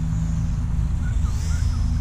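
Eachine P-51 Mustang micro RC plane's small electric motor and propeller whining high as it flies by, the pitch sliding down and then rising and growing louder about a second and a half in. A steady low hum runs underneath.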